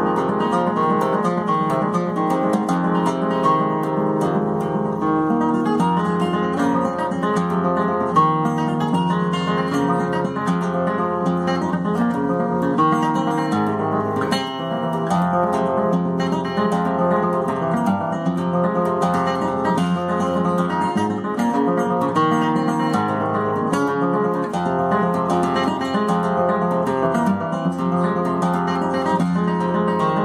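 Nylon-string classical guitar played solo and fingerpicked, a steady, unbroken stream of plucked notes and chords.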